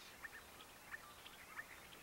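Near silence: a faint hiss with a few faint, short high chirps scattered through it.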